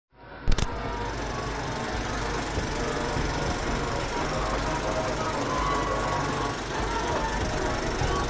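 Film projector running with a steady mechanical rattle, after a sharp click about half a second in.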